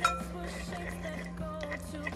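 A metal spoon clinking and scraping against a mixing bowl as softened butter is stirred, with a sharp clink right at the start and fainter taps later. Quiet background music runs underneath.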